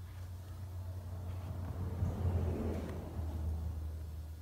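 A flexible plastic spreader dragged slowly across wet silicone glue on a leather seat cushion, a soft smearing scrape that swells around the middle, over a steady low hum.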